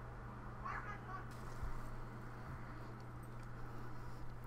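Faint outdoor background with a steady low hum, and a brief distant voice about a second in.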